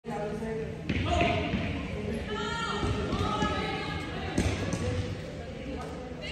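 Indistinct voices chattering in a large echoing hall, with low thuds and a couple of sharp knocks, one about a second in and another past the middle.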